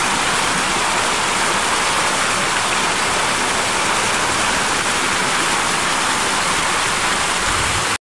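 Water spilling steadily over the curved ledges of a tiered garden fountain and splashing into the pool below, a constant rushing splash.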